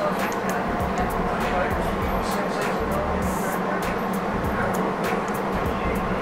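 Inside an RTD G Line Silverliner V electric commuter train car running at speed: a steady rumble of wheels on rail with a low, even hum, and voices in the background.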